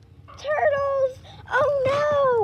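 A child's high-pitched voice making two drawn-out wordless whining cries, the second sliding down in pitch.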